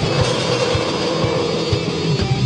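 Melodic death metal band recording with distorted guitars and drums playing. The low chugging riff drops out for a moment while a held, wavering note carries over the drum hits.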